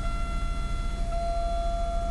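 Oldsmobile Alero engine idling steadily just after a jump start, heard from inside the cabin, with a low even pulse and a steady high-pitched tone over it.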